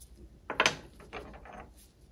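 Hard plastic parts of an outboard ignition coil clicking and scraping as they are handled and set down by gloved hands: a sharp click about half a second in, then softer scraping.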